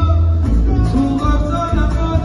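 Live band music: a held wind-instrument melody over frame drum, box drum and plucked strings, with a heavy bass beat that comes in suddenly right at the start.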